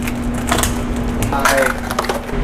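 Rolling pizza cutter crunching and scraping through a pizza's baked crust against the cardboard box beneath, then the cardboard lid handled near the end. A steady hum runs underneath.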